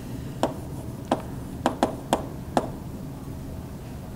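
Chalk tapping and striking against a chalkboard while an arrow and its label are drawn: six short, sharp taps spread unevenly over the first two and a half seconds.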